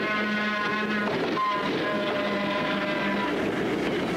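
Electric interurban train sounding its horn in two long blasts, the first breaking off about a second in and the second held about two seconds, over the steady rumble of the running train.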